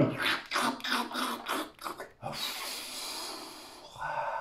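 A person making mouth sound effects for a toy character drinking to cool a mouth burnt by hot sauce: a quick run of short breathy gulps, about four a second, then a long breathy exhale.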